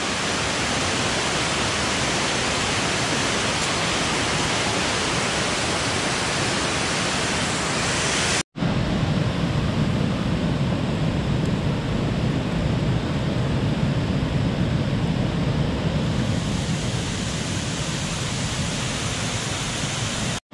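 Waterfall and rapids rushing: a loud, steady, dense wash of falling water. After a cut about eight and a half seconds in, the rush goes on deeper and less hissy.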